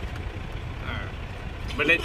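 Car engine idling, a steady low rumble heard from inside the cabin with the window down.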